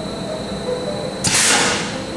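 Oil country lathe running with a steady machine hum, its spindle turning. About a second and a quarter in comes a short hiss lasting about half a second.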